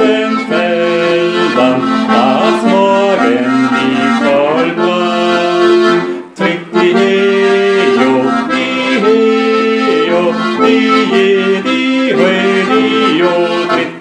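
Accordion playing a folk-song tune with chords over a steady bass, with a brief break about six seconds in. Near the end a man starts singing the 'di-yo' refrain.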